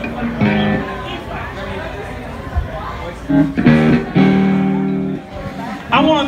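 Electric guitar through an amp sounding three loose held notes or chords, the last and longest lasting about a second, with people talking underneath; no full song is being played.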